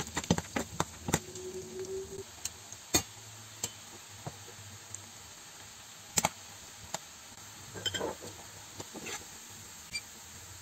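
Chopped ginger frying in oil in a nonstick pan, a steady sizzle, with repeated clicks and scrapes of a metal slotted skimmer stirring it against the pan, most frequent in the first second or so.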